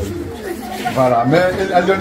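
People's voices, several talking close by at once, with no music under them.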